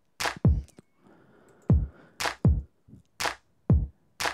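Software drum sequencer (iZotope BreakTweaker) playing a sparse, uneven beat built from one-shot kick drum and snare samples: deep kick hits that drop in pitch, with sharp, bright snare hits between them.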